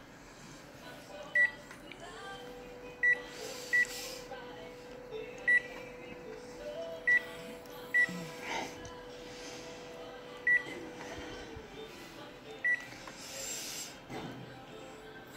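Konica Minolta bizhub C353 copier's touchscreen beeping as its buttons are pressed: eight short, high single-pitch beeps at irregular intervals. Under them a steady hum comes in about two seconds in and fades out about eleven seconds in.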